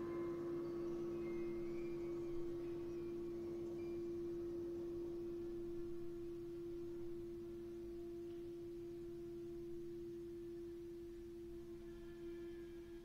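Chamber ensemble sustaining a single pure, steady tone in the middle register that slowly fades, after a fuller chord dies away at the start; faint soft textures sit underneath.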